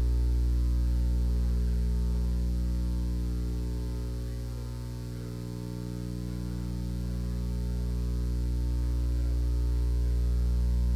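Steady electrical mains hum from the recording or sound system, a stack of even buzzing tones with no voice over it. It fades somewhat about halfway through and rises again near the end.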